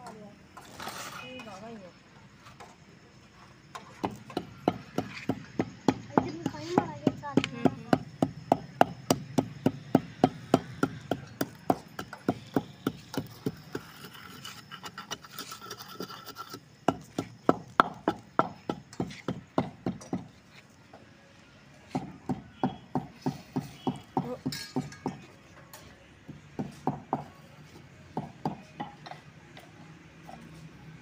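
Wooden pestle pounding spices in a clay mortar: a long run of steady knocks, about three a second, then two shorter runs after brief pauses in the second half.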